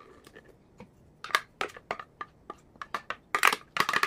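A plastic blender jar tapping and knocking against a stainless steel pot while dosa batter is poured out: a run of irregular sharp taps, several a second, loudest near the end.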